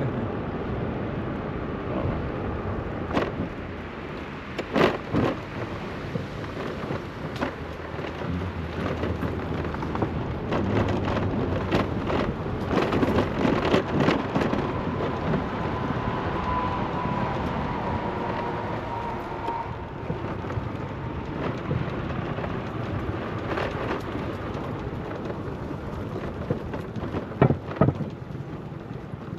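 Wind buffeting the microphone while riding a moped: a steady rumbling rush with scattered sharp knocks.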